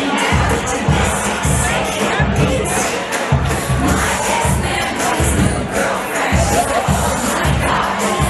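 Loud dance music with a steady bass beat, about one and a half beats a second, with a crowd of guests shouting and cheering over it.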